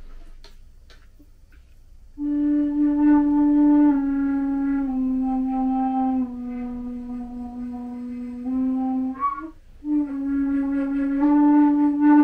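Hybrid flute, a Native American-style flute mouthpiece on a composite Guo New Voice concert flute body, playing long held low notes. Starting about two seconds in, the pitch steps slowly down note by note and then back up, with a short break between notes about two-thirds of the way through.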